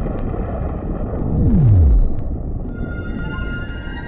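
Cinematic logo-intro sound design: a low rumbling noise with a deep tone that sweeps steeply down in pitch about a second and a half in, its loudest moment. Steady ringing synth tones come in just before the end.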